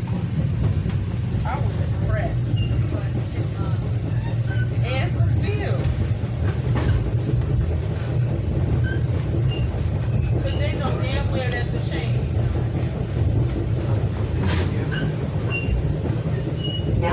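Metra Rock Island Line commuter train running between stations, heard from inside the passenger car as a steady low rumble, with indistinct voices of other passengers talking now and then over it.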